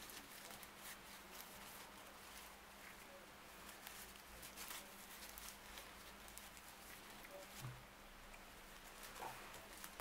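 Near silence with faint, scattered rustles and soft clicks of paper yarn being drawn through stitches with a large crochet hook.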